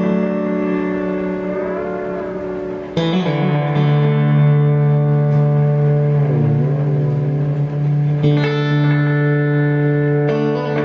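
Electric guitar chords through a 1776 Effects Multiplex, a PT2399 tape-echo simulator set to its Space Echo mode, into a Tone King Imperial amp. New chords are struck about three seconds in and again near the end, each sustaining with echo repeats. Twice the repeats briefly waver up and down in pitch.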